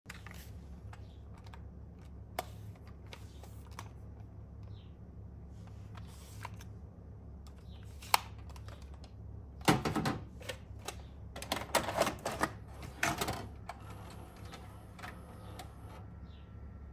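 Plastic VCR remote control being handled: scattered light clicks, then a cluster of louder clacks and rattles between about ten and thirteen seconds in as it is worked and set down on the VCR, over a low steady hum.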